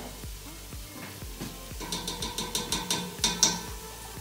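Onions, garlic and spices sizzling gently in oil in a stainless steel pot. About halfway through comes a quick run of clicks and scrapes, about five a second, as a measuring spoon of ketchup is knocked and scraped against the pot.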